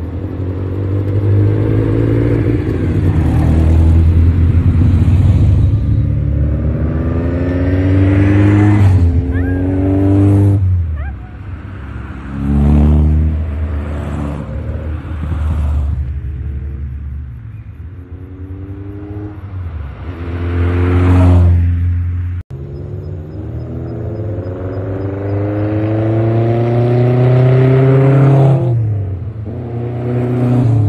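A string of Super Seven-type open sports cars driving past one after another, each engine note rising as the car accelerates by. There is a quieter lull midway before the next few cars come through.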